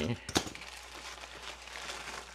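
Plastic poly mailer crinkling as it is handled and pulled open, with a couple of sharp clicks about a third of a second in.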